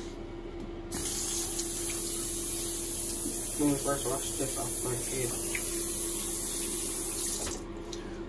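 Bathroom sink tap running steadily into the basin. It is turned on about a second in and off near the end.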